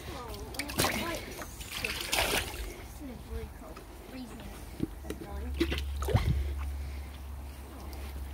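Slime Baff water splashing and sloshing in a few short bursts, with faint voices behind.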